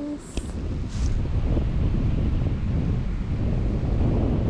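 Wind buffeting the camera microphone: a rough, uneven low rumble that grows louder about a second in and carries on steadily.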